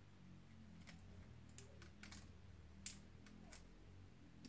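Near silence with a few faint clicks of hard plastic as the tail of a Solgaleo Happy Meal toy is worked by hand, the loudest a little before three seconds in, over a faint low room hum.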